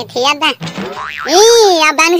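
High-pitched, sped-up cartoon character voices speaking briefly, then one long pitched sound that rises and falls once, near the end.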